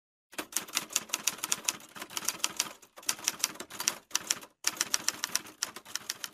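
Typewriter keys striking in quick runs of several clacks a second, broken by two short pauses.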